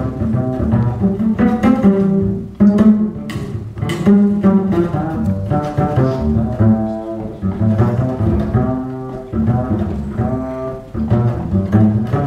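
Upright double bass played pizzicato, a continuous run of plucked notes in a bebop line, each note held into the next so the phrase sounds legato rather than clipped.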